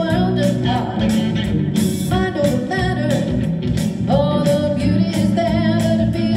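A woman singing live into a microphone, accompanied by an electric guitar strummed in a steady rhythm: a rock song.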